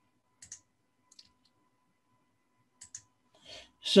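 Faint clicking at a computer: a few separate clicks at uneven intervals.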